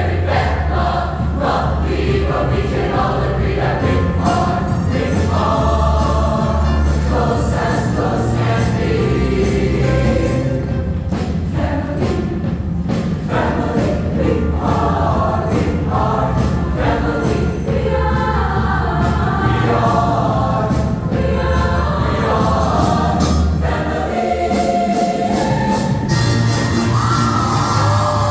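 Show choir singing in full ensemble with instrumental backing and a steady beat, ending on a rising held note.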